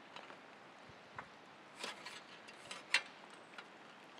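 A few light clicks and taps of the trailer's hitch arm being lined up on the motorcycle's rear axle, the sharpest just before three seconds in, over faint hiss.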